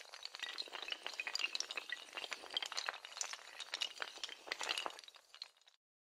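Sound effect of a long cascade of small hard tiles toppling like dominoes: a sharp knock at the start, then dense, irregular clicking and clinking for over five seconds, which cuts off suddenly near the end.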